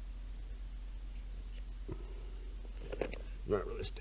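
A low steady hum for most of the stretch, then a man's voice starting about three seconds in.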